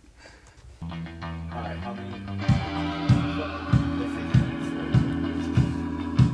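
A rock band starts a song: guitar and bass come in with held notes about a second in, and the drums join about two and a half seconds in with a steady beat a little over half a second apart.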